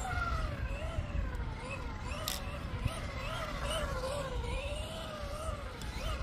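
Electric motor and drivetrain of a Tamiya TT02 radio-control car whining, the pitch rising and falling again and again as the throttle is eased on and off through a figure of eight. A low steady rumble lies underneath.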